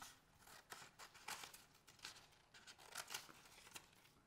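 Scissors cutting out a small paper picture: a faint run of short, irregularly spaced snips.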